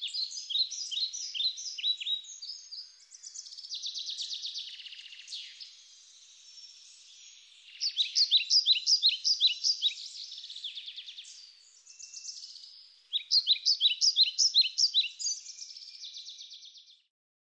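Songbirds singing: three runs of quick, high, falling chirps, about three a second, starting near the start, at about eight seconds and at about thirteen seconds, with a softer, buzzy trill between them.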